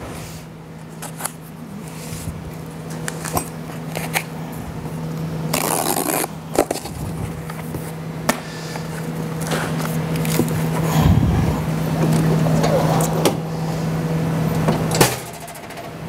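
A cardboard box being opened: its packing tape cut and its flaps pulled open, with cardboard scraping and rustling, a run of clicks and a longer rasp about five and a half seconds in. Under it a steady low machine hum stops about a second before the end.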